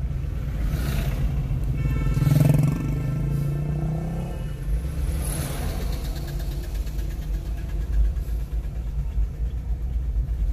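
Car driving in slow town traffic, heard from inside the cabin: a steady low rumble of engine and tyres. From about two seconds in, a held pitched sound with several overtones rises over it for about two and a half seconds.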